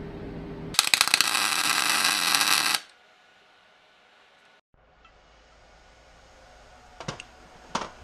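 MIG welder arc crackling for about two seconds: a short tack weld with argon-CO2 shielding gas. It stops abruptly, leaving low room tone with a couple of sharp clicks near the end.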